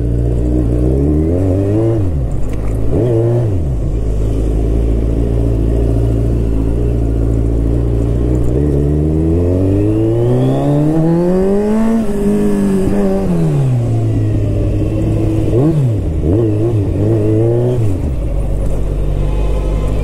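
Kawasaki Z1000's inline-four engine running as the motorcycle pulls away and rides through the gears. The pitch dips and recovers a few times, climbs steadily to a peak about twelve seconds in, then falls away again.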